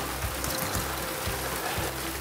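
A light shower of rain and graupel falling, heard as an even hiss, with quiet background music underneath.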